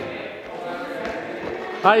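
Soft thuds of a person hopping from one foam block to the next, a few landings roughly half a second apart, over faint room noise in a large hall.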